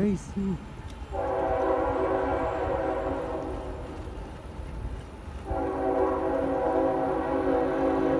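Multi-chime diesel locomotive air horn, from the lead GE ET44AH of a Union Pacific freight train, sounding two long blasts. The first starts about a second in and the second about five and a half seconds in, the usual opening of a grade-crossing signal as the train approaches.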